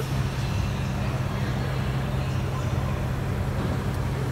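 Steady low background hum with a faint noisy wash, unchanging throughout.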